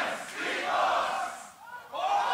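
A crowd of spectators shouting and cheering at the announcement of a beatbox battle's jury decision, the noise swelling and then fading about one and a half seconds in.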